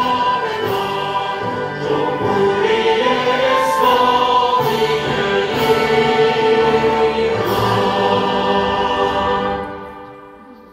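The Iranian national anthem, a choir singing over instrumental backing, played through a hall's loudspeakers. It fades out near the end.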